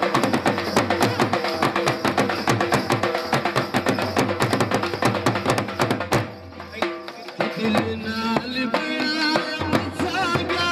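Fast Punjabi dhol drumming, a dense run of regular strokes that breaks off about six seconds in. After a short lull a wavering melody comes in over lighter drumming.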